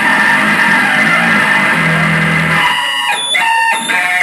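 Live rock band with electric guitar and electric bass playing, the bass holding low notes; near the end the low end drops out and the band plays short, separated hits.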